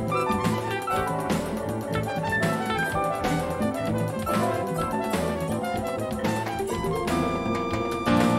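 Electric guitar and piano playing an improvised jazz duet.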